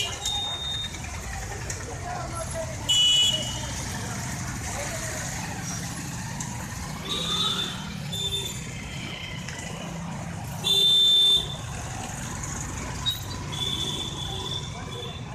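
Motorcycles riding past at low speed with engines running, and several short horn honks over them, the longest and loudest about three seconds before the end. Voices of the people along the road mix in.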